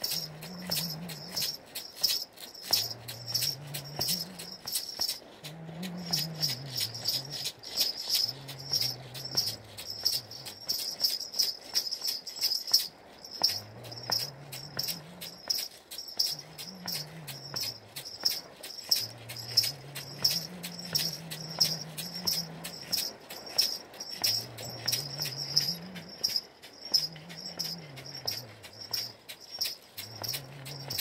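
A dvoyanka (Bulgarian double flute) plays a low melody in phrases that climb and fall, with short breaths between. Under it run ankle bells and a basket rattle, shaken in a quick, steady jingling rhythm.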